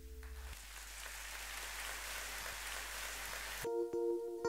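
Audience applause as the previous piece's held notes die away, cut off abruptly near the end when picked guitar notes start the next piece.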